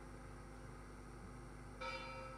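Altar bell struck once near the end, its several clear tones ringing on; before that only the faint fading tail of the previous ring over a low hum. It is rung at the elevation of the host during the consecration.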